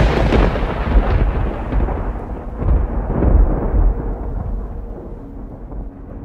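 A rumble of thunder, loudest at the start and fading over several seconds, with a second swell about three seconds in.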